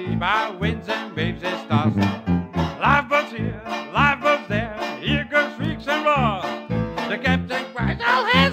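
Traditional Dixieland jazz band playing an instrumental passage: tuba bass notes on the beat about twice a second under banjo chords, with trumpet, clarinet and trombone weaving melody lines that slide in pitch.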